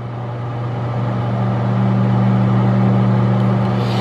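Microwave oven running: a steady low hum with a higher buzz over it, growing a little louder partway through.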